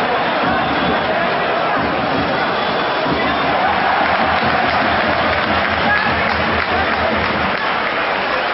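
Steady noise from a large football stadium crowd: many voices shouting together, with no single sound standing out.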